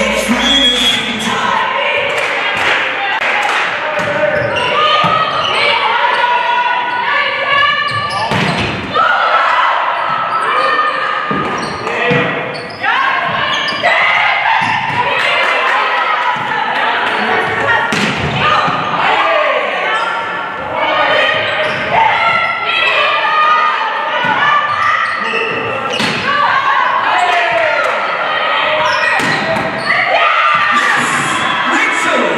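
Indoor volleyball match in a sports hall: a referee's whistle blows shortly after the start, then sharp hits of the ball on serves and spikes ring out through the rallies. Players and spectators shout and call the whole time.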